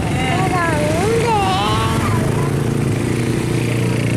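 An engine running steadily at a constant low pitch, with people's voices over it in the first couple of seconds.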